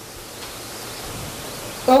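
A steady hiss with no voices, growing slightly louder, then a man's voice starting right at the end.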